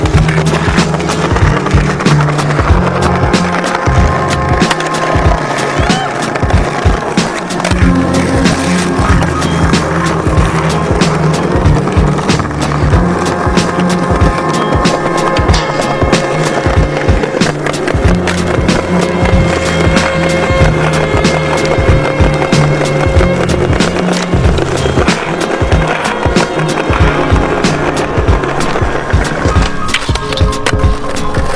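Music with a steady beat and bass line, over the sound of skateboards: wheels rolling on pavement and repeated sharp knocks of boards popping and landing on concrete and stone ledges.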